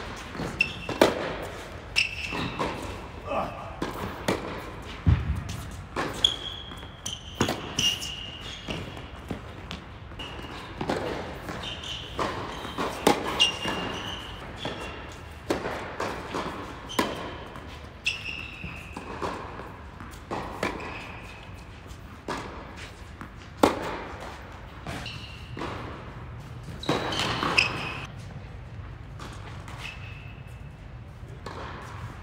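Tennis rallies on an indoor hard court: repeated sharp racket strikes and ball bounces echoing around a large hall, with short high squeaks from the players' shoes between the hits.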